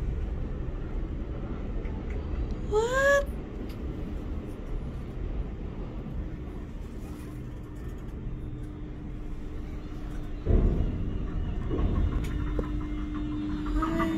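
Low, steady rumble of wind on a phone microphone. A short rising vocal exclamation comes about three seconds in, a sudden knock about ten seconds in, and a faint steady hum runs through the second half.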